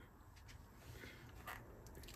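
Near silence: room tone with a faint low hum and two faint brief ticks.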